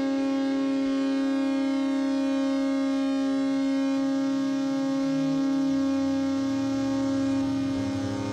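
Electronic music: a steady synthesizer drone held on one pitch with many overtones. Low bass notes step in beneath it from about halfway through.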